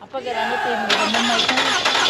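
Toyota RAV4 engine starting on a portable jump starter clamped to its battery, which the cold has left too weak to start the car. The engine catches suddenly about a second in and keeps running steadily.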